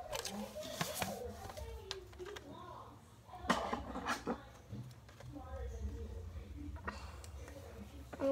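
A sheet of paper being handled, with a few short, sharp crinkles and rustles, over faint speech in the background.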